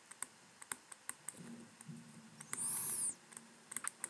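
Faint, scattered light clicks and taps of a stylus pen on a tablet screen as words are handwritten. A faint hum comes in midway, with a brief high squeak just before the three-second mark.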